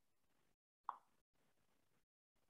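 Near silence, broken once about a second in by a single short click or plop that fades quickly.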